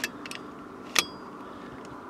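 FX Impact X PCP air rifle's side lever being cycled to chamber another slug: two sharp metallic clicks about a second apart, the second louder with a short ring.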